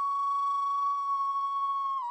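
Instrumental music: a flute holding one long, steady high note.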